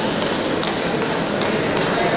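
Table tennis balls clicking in irregular sharp taps, about two a second, over the steady background noise of a crowded sports hall.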